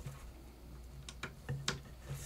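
A few faint, light clicks, about four in the second half, from small plastic cable connectors being handled and pushed onto the motherboard's RGB pin headers, over a faint low hum.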